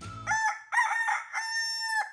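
A rooster crowing, cock-a-doodle-doo: a few short broken notes, then one long held final note.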